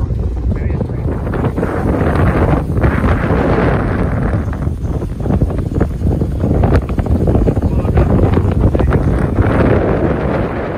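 Wind buffeting the microphone on the open deck of a moving water taxi, a loud, gusting rumble over the boat's running noise.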